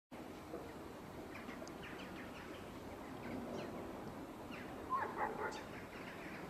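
Outdoor orchard ambience with small birds chirping repeatedly, and a louder short call about five seconds in.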